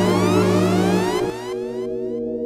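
Instrumental intro of a hip-hop track: held chords with many rising sweeping tones above them. A little over a second in, the bass and the sweeps drop away, leaving the held chords.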